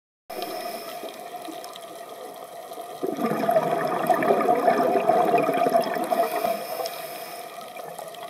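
Underwater sound of a scuba diver's exhaled bubbles rushing from the regulator, heard through the camera housing: a loud burst of bubbling starts about three seconds in and fades near the end, over a steady low water hum.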